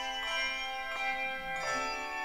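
Handbell choir playing a piece: many bells ringing together in overlapping, sustained tones, with new chords struck every half second or so.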